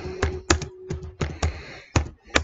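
Typing on a keyboard: about seven irregular keystrokes in two seconds, each a sharp click with a dull knock, as a line of text is typed.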